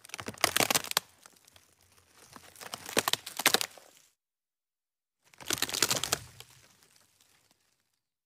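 Keyboard-typing sound effect: rapid clicks in three bursts of one to two seconds each, with silent pauses between them.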